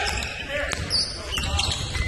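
Basketball bouncing on a hardwood gym floor during live play, with a few sharp knocks and a short high squeak about a second in, over faint voices in the gym.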